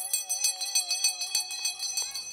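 A handheld cowbell shaken rapidly, its clapper striking many times a second, with a steady held tone underneath.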